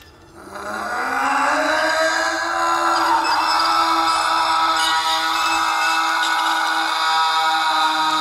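Whine of the tower-jump cable trolley and brake as the rider slides down the guide wire. It rises in pitch over the first second as the descent picks up speed, then holds steady.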